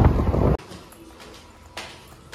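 Wind buffeting the microphone, cutting off abruptly about half a second in. Then a quiet interior with a single footstep tap on a hard tiled stair near the end.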